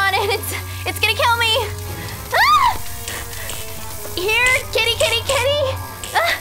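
A woman screaming and crying out without words, several wailing cries with one high shriek about halfway in. Under them runs a steady low electric hum from the death ray, which cuts off near the end.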